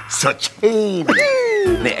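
A man's drawn-out falsetto vocal exclamation. It starts with a short falling tone, then about a second in it jumps high and slides slowly down.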